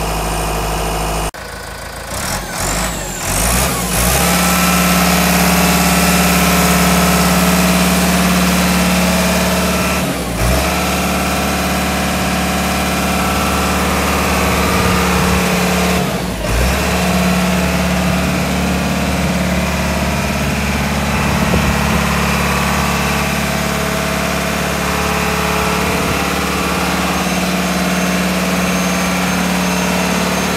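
Tamrock Robolt 07 rock bolter running steadily. About a second in the sound breaks off, then winds back up with a rising whine and settles into a steady hum, with two brief dips later on.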